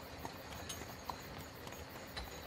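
Faint clip-clop of horse hooves, a few spaced hoofbeats over a low steady background rumble: the sound of a horse-drawn carriage travelling.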